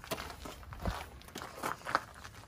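Irregular light rustles and small knocks of footsteps shifting on grass and gravel as someone bends and crouches at an RV's open side bay, with a dull thump a little under a second in.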